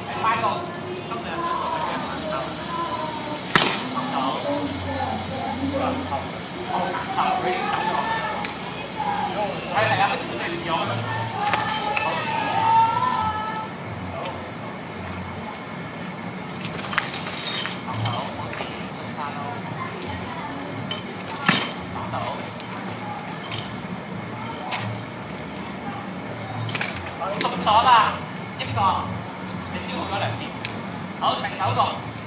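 Training swords clacking against each other in sparring: a few sharp, separate strikes, mostly in the second half, with people talking in the first half.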